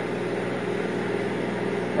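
Steady hum and hiss of a switched-on laser cutter/engraver standing idle, not cutting.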